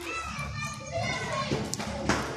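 Children's voices chattering and calling indistinctly, joined by a few sharp taps or clicks from about one and a half seconds in.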